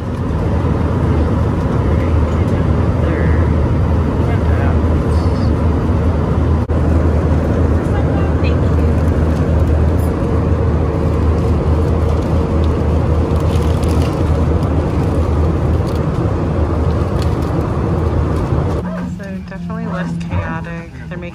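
Jet airliner cabin noise: a loud, steady low rumble of engines and air that cuts off about a second before the end.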